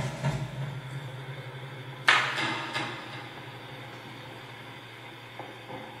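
Amplified knocks and scrapes from small objects handled on a table, among them a ceramic mug, heard over a steady low hum. The loudest knock comes about two seconds in and rings on briefly; two smaller knocks come near the end.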